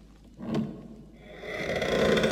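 A short sound about half a second in, then a drawn-out, wordless vocal sound, like a moan, that grows louder through the second half.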